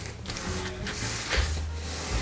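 Stiff acrylic-painted printing paper rustling and sliding softly under the fingers as a folded sheet is handled, with a brief louder rustle under a second in. Soft background music runs underneath.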